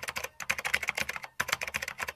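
Computer-keyboard typing sound effect: rapid key clicks, several a second, with two short pauses, going with text being typed out letter by letter on screen.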